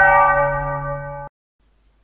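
A single bell stroke ringing with several steady tones and fading, then cut off abruptly just over a second in.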